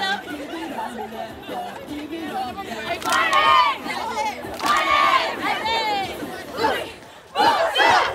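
Crowd shouting and chattering, with several loud, high shouts standing out over the babble and a brief lull just before the end.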